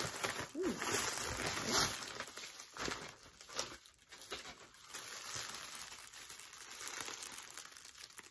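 Clear plastic packaging crinkling and rustling as it is handled, with frequent sharp crackles.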